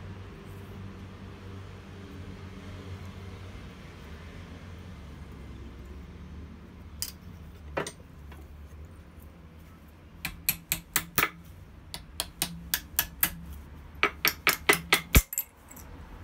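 Small steel pieces clicking and clinking against each other and a steel bench vise as a forge-welded tool-steel billet is worked out of its stainless steel pipe shell: a couple of single clicks, then quick runs of light metallic taps in the second half, over a low steady hum.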